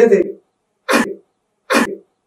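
A voice speaking briefly, then two short coughs, one about a second in and one near the end.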